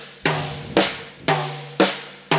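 Snare drum struck with evenly spaced single strokes, about two a second, each ringing out briefly before the next: a slow, steady left-hand exercise.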